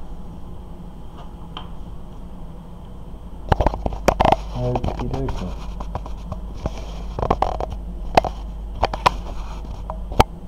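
Small plastic model-kit parts being handled on a tabletop: a run of sharp clicks and knocks starting about a third of the way in, with a brief paper rustle, over a steady low hum.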